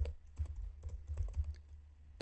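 Computer keyboard typing: a run of light, irregular keystrokes as code is entered.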